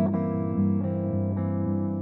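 Clean electric guitar letting a jazz chord voicing ring out, one that keeps the open E string sounding inside the chord. The chord sustains steadily, with a few slight shifts in the notes.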